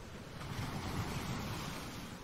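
Ocean surf sound effect: a rushing wash of noise that swells about a second in and then slowly ebbs.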